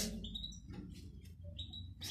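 Canaries giving two short, faint chirps, one about half a second in and one near the end, over a low steady hum.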